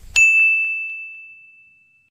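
A single bell-like ding sound effect, struck once with one clear high tone that rings down and fades over about two seconds.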